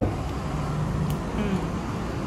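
A steady low background rumble that cuts in suddenly at the start, with a faint voice in the background.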